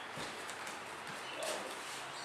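Bare feet stepping on dojo mats, faint, with a soft thump just after the start and another small bump about a second and a half in.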